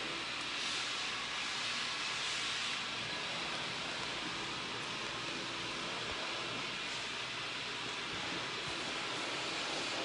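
A steady hiss of background noise with no distinct events, a little stronger in the first few seconds.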